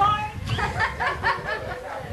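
People talking with light chuckling laughter, a run of short chuckles from about half a second in.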